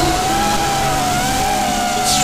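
FPV racing quadcopter's motors whining steadily as it flies low and fast, the pitch rising slightly and then easing back with the throttle.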